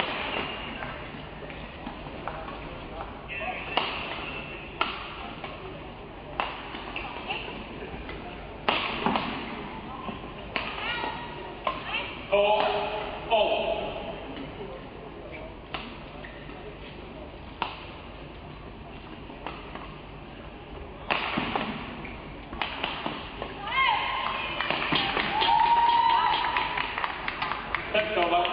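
Badminton rackets striking the shuttlecock in a doubles rally: a string of sharp, irregular hits about a second apart, with the reverberation of a large hall.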